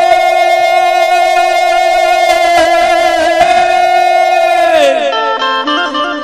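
Chhattisgarhi stage-show instrumental led by an Indian banjo (bulbul tarang). It holds one high note steady for about four seconds, then slides down and breaks into a quick run of short stepped notes near the end.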